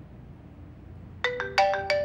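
A phone ringtone starts about a second in, after a quiet moment: a melody of clear, briefly held notes stepping up and down in pitch.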